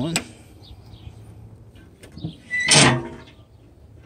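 The steel lid of an Oklahoma Joe's offset smoker being lifted open, its hinges giving one short metallic creak a little before three seconds in.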